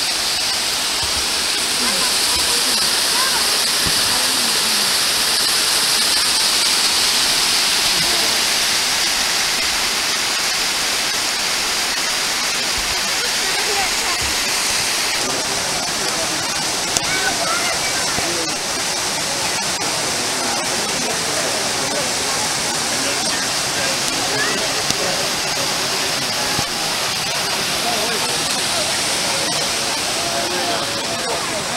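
Stone Mountain Falls, a waterfall sliding down a steep granite rock face, giving a steady, loud hiss of rushing water.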